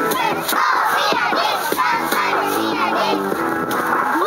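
A group of young children shouting a cheer together, with music playing underneath.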